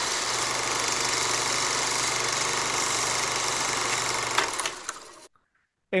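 Film projector running sound effect: a steady, rapid mechanical clatter over a constant hum, fading out about four and a half seconds in and stopping just after five seconds.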